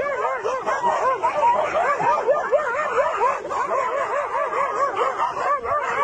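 Several dogs yapping at once: a continuous run of short, high-pitched yips, several a second, overlapping one another.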